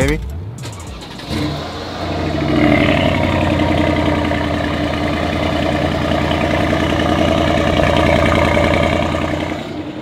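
Brabus-tuned Mercedes-AMG GL63's twin-turbo V8 starting: it cranks about a second in, catches with a brief rev flare, then settles into a steady idle with a little grumble.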